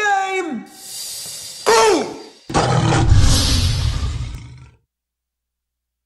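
A sung note trails off, then a short falling growl and a loud big-cat roar sound effect with a deep rumble, fading out just before five seconds in.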